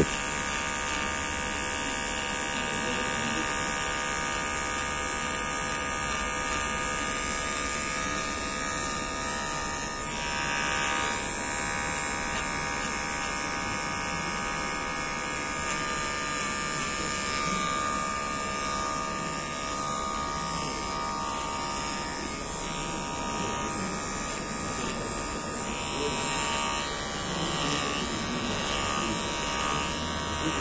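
Cordless electric hair trimmer running with a steady buzz as it trims a man's beard.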